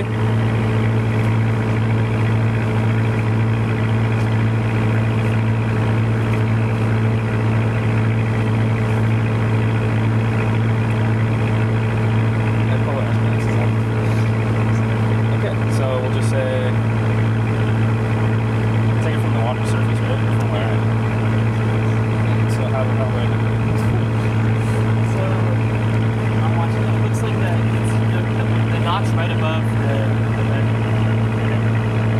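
A research boat's engine running steadily, a loud, deep, even hum that holds the same pitch and level throughout.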